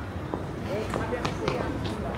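Street ambience of a busy pedestrian street: passers-by talking in the background over a low traffic rumble, with a handful of short sharp taps.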